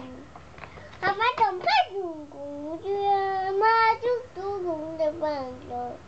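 A toddler's high voice chanting in a sing-song, as if reading aloud from a book, with no clear words; a few notes are held out long around three to four seconds in.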